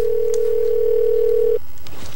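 Telephone ringing tone heard in the handset of a call that goes unanswered: one steady tone that cuts off suddenly about one and a half seconds in.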